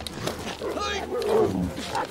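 A dog snarling and growling as it attacks a man pinned on the ground, in short pitched bursts that rise and fall, loudest about a second in.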